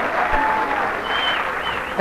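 Live audience applauding, with a few voices faintly heard in the crowd.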